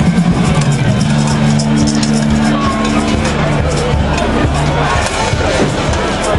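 Live music played by revelers in the street: low notes held steady for a second or more, with quick sharp percussive ticks over them and crowd chatter all around.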